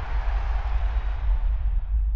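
Logo-sting sound effect: a deep, sustained rumble with a hiss over it, its top slowly dying away.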